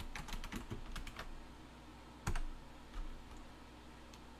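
Typing on a computer keyboard: a quick run of keystrokes, then a single louder key strike a little past two seconds in and another lighter one near the end.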